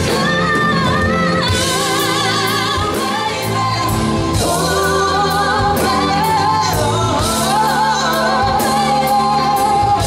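Live pop duet: a man and a woman singing with vibrato on held notes, over a band of drums, keyboards, bass and guitar.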